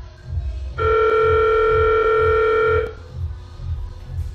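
Lift emergency alarm buzzer, pressed from inside the car, sounding one loud steady tone for about two seconds, starting about a second in. It plays over background music with a slow pulsing bass beat.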